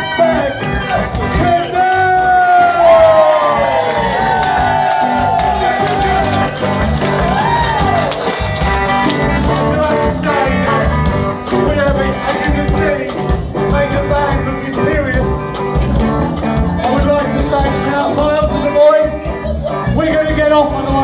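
Live band playing a blues-style rock-and-roll number, with a guitar lead whose notes bend and slide up and down.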